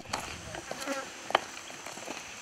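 Insects buzzing steadily, with a single sharp click about a second and a half in.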